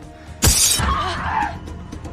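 Glass shattering in one sudden crash about half a second in, over a film's music score.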